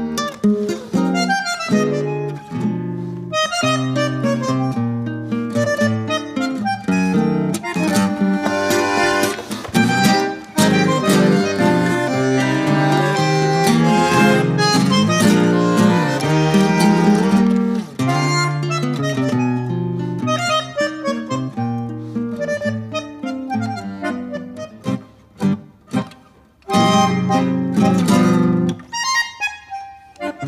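Bandoneón and acoustic guitar playing a tango together: the bandoneón's reeds sustain the chords and melody over plucked guitar notes. The playing thins out and softens for a couple of seconds near the end, then comes back in full.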